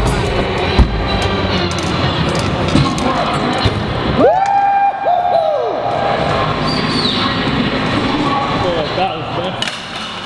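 Hip hop song with vocals playing as a soundtrack. About four seconds in, a long pitched note glides up and holds for over a second with a brief break.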